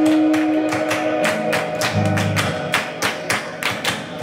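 Live rock band in a breakdown: hand claps in a quick, steady rhythm over a held guitar note that fades out about a second in, with a short bass note partway through.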